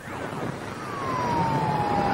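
Military radio receiver between transmissions: a static hiss with a whistling tone that falls steadily in pitch, typical of a heterodyne on a radio channel.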